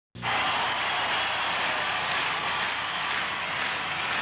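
A steady hiss of noise, with no tone or rhythm in it, that starts abruptly just after the beginning.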